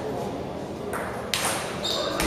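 Table tennis ball clicking off the paddles and the table during a rally, with sharp hits about a second in and again shortly after.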